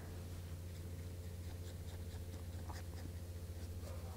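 A watercolour brush lightly dabbing and stroking on paper towel and paper, a few faint scratchy touches over a steady low electrical hum.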